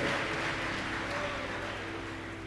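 Congregation applause and crowd noise dying away, over soft, sustained background music chords.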